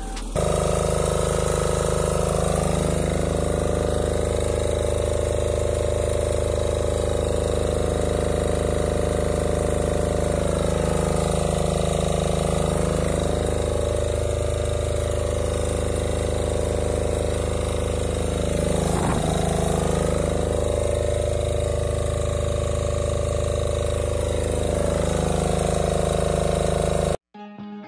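Diesel engine of a forestry machine running steadily, with a higher whir that rises and falls every few seconds.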